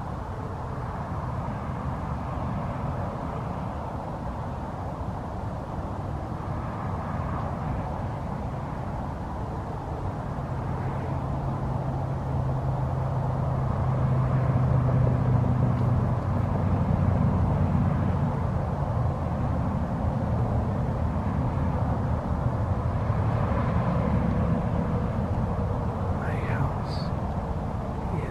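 Low, steady drone of a distant engine under outdoor background noise. It grows louder through the middle and eases off again.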